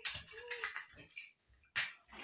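A shopping bag and the plastic-wrapped item inside it rustling and crinkling as they are handled, with one sharp click near the end.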